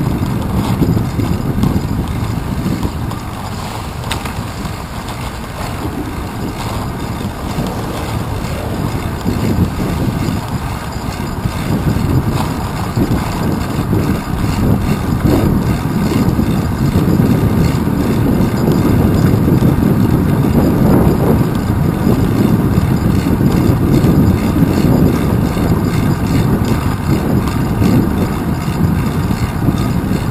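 Low, steady rumble of wind buffeting and road vibration picked up by a handlebar-mounted GoPro Hero 2 on a moving bicycle. It eases a few seconds in, then grows louder from about the middle on.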